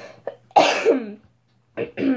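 A girl coughing into her hand: one harsh cough about half a second in that trails off with a falling pitch, and a shorter sound just before the end.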